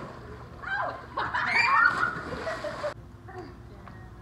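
Splashing in a swimming pool with girls' high-pitched shouts. About a second in comes the loudest part, a burst of splashing and excited shrieks, which cuts off abruptly just before three seconds in.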